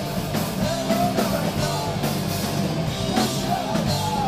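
Punk rock band playing live: electric guitar, bass guitar and drum kit driving a fast, steady song.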